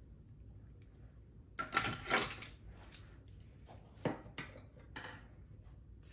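Art supplies being handled on a tabletop: paintbrushes and paint markers clatter as they are picked up and set down, a bunched rattle of knocks about two seconds in, then a couple of single knocks.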